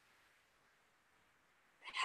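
Near silence: a pause in speech, with a woman's voice starting again near the end.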